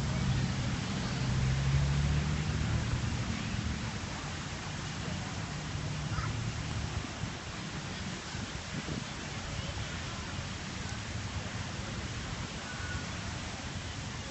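Steady rushing and splashing of large outdoor fountains, with faint voices of people milling about, and a low rumble in the first half that fades out.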